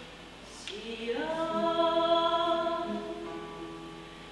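A woman singing a Russian romance to her own classical guitar. After a quieter moment she rises into a long held note about a second in and sustains it for about two seconds.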